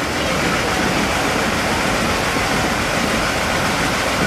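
A vehicle engine idling steadily, a constant low rumble with hiss, with no revving or change in speed.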